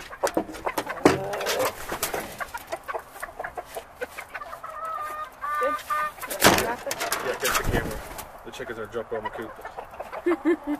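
Backyard chickens clucking, with a longer pitched call about halfway through. Knocks and handling thumps mix in, the loudest a little after the middle.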